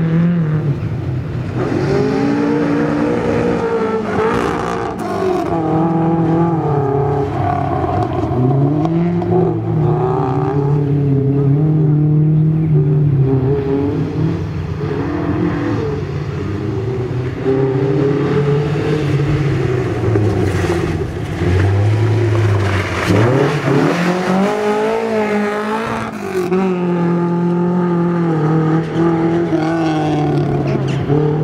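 BMW 2002 rally car's four-cylinder engine revving hard, its pitch rising and falling again and again through acceleration, lift-off and gear changes. About two-thirds through, the revs drop low and then climb steeply again.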